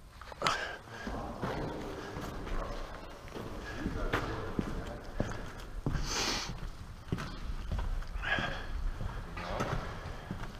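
Footsteps scuffing and crunching over a debris-strewn floor, irregular knocks and scrapes among handling noise from a camera carried on the move. Faint voices sit underneath.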